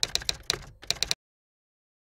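Typing sound effect: about ten quick keystroke clicks over the first second as an on-screen title types itself out, then it cuts off suddenly.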